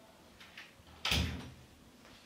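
Panelled wooden interior door being pushed shut: a couple of faint sounds, then one sharp thud about a second in as it closes.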